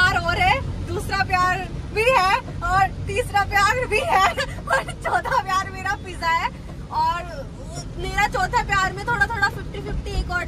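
A woman talking continuously over the steady low rumble of a car cabin on the move.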